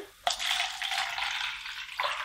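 Clear liquid pouring in a thin stream from a plastic jug into a plastic cup, starting about a quarter second in and running steadily.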